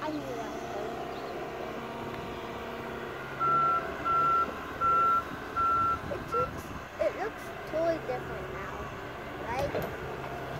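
John Deere excavator's diesel engine running steadily, with its travel alarm sounding a run of five evenly spaced, high beeps a little over three seconds in.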